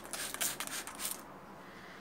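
A spray bottle of air freshener giving a quick run of short hissing sprays onto a fabric curtain, all within about the first second.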